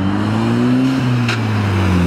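A car driving past close by, its engine note rising for about a second as it accelerates, then easing down slightly as it goes by.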